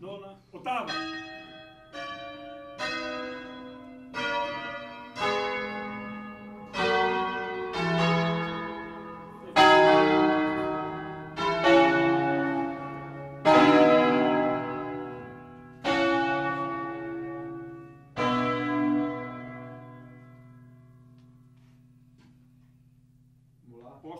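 A set of rope-rung church tower bells, swung full circle (suono a distesa), striking one after another at roughly one stroke a second. The bells are of different pitches and sound louder towards the middle of the run. The last stroke rings on and fades away over the final few seconds.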